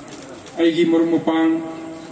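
A man speaking into the lectern microphone, a short phrase that ends on one long drawn-out syllable.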